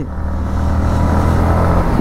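Yamaha MT-15 V3's 155 cc single-cylinder engine pulling steadily under acceleration at speed, with wind rushing over the helmet-mounted microphone. Near the end it shifts up from fifth into sixth gear.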